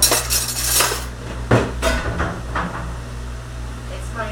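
Dishes and cutlery clattering as they are handled at a stainless-steel dish sink: a dense rattle through the first second, then two sharp knocks around a second and a half in and a few lighter clinks after.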